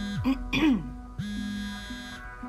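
A mobile phone buzzing on vibrate against the papers it lies on, which is the sign of an incoming call. One buzz dies away just after the start. A short sound with a falling pitch follows, and a second buzz stops near the end as the phone is picked up. Soft background music runs under it.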